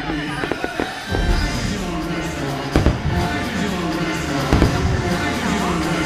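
Aerial fireworks bursting in a series of sharp bangs, a cluster near the start and more spread through, over loud show music with voices.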